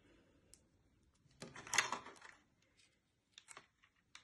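Clear plastic egg carton crinkling and clicking as it is handled and string is threaded through a hole in it, with one louder rustle in the middle and a few light clicks near the end.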